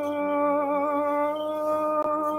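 A single voice singing one long held note of Orthodox liturgical chant, steady in pitch with a slight waver.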